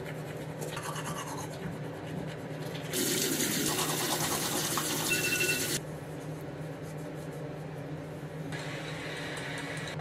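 Teeth being brushed with a toothbrush, a soft scrubbing over a steady low hum. About three seconds in, a louder hiss comes in and cuts off abruptly almost three seconds later.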